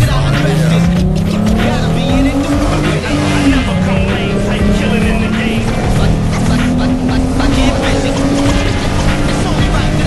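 2007 Hyundai Tiburon's 2.7-litre V6 with an Injen short ram intake, accelerating through the gears of its Shiftronic automatic. The engine note climbs in pitch over the first few seconds, drops at a shift about three seconds in, then climbs again.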